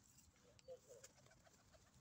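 Faint, brief cooing of domestic pigeons about half a second in, otherwise near silence.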